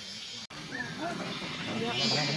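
People talking quietly, with a brief dropout in the sound about half a second in.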